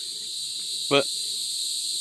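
Steady, high-pitched chorus of insects, with one short spoken word about a second in.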